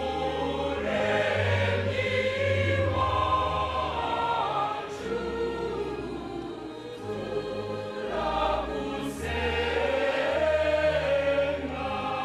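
A choir singing a slow offertory hymn at a Catholic Mass, its held sung lines moving over sustained low accompaniment notes.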